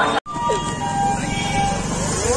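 Busy road traffic with vehicles running and horns honking in held, steady tones, one short and then a longer one. The sound cuts out for an instant about a quarter second in.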